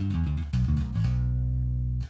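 Electric bass guitar played through a Line 6 Helix clean bass patch with its compressor switched off, a tone described as almost sort of dead. A few plucked low notes, then one longer held note.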